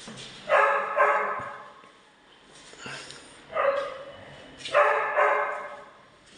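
A dog barking about five times: two barks near the start, then three more from the middle on.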